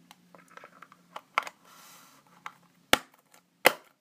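Plastic slime containers being handled on a table: a series of sharp clicks and knocks, the two loudest about three seconds in and just before the end, with a brief soft scraping sound near the middle.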